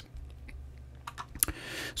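A few soft computer mouse clicks, the loudest a close pair about a second and a half in, over a faint low hum.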